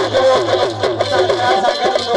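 Live Sindhi folk music: a wavering harmonium-led melody over a steady drum beat.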